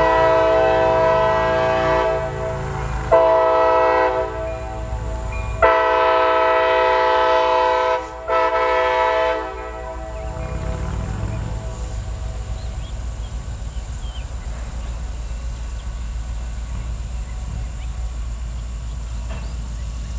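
CSX diesel locomotive's air horn sounding at a grade crossing in four blasts, the last one short, stopping about nine and a half seconds in. Then the low rumble of the locomotive rolling past.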